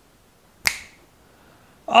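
A single sharp click about two-thirds of a second in, with a short ringing tail, against low room tone.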